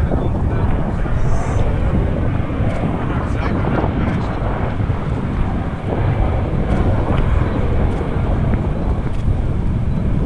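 Wind buffeting the microphone on a boat over choppy open water: a loud, steady, rough rumble that does not swell or fade.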